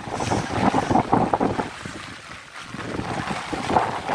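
Floodwater splashing and sloshing in uneven surges, with wind buffeting the microphone. It swells about a second in and again near the end.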